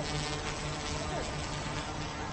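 Zero Zero Robotics Falcon tilt twin-rotor drone flying overhead, its two propellers giving a steady buzzing hum that is quiet for a drone.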